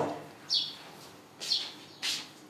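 A bird chirping: two short, high chirps about a second apart.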